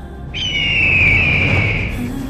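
Trailer sound-design effect: a single high whistling tone that begins about a third of a second in and slides slowly downward for about a second and a half, over a swelling rush of noise that peaks around the middle.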